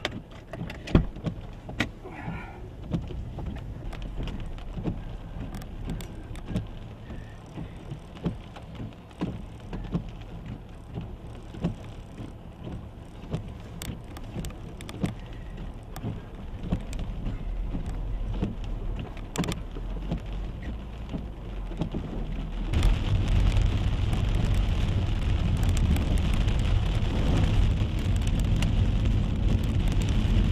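Rain hitting a car's roof and windshield, with separate drops heard as sharp taps over a low, steady rumble. About 23 seconds in, the sound becomes a louder, steady rush.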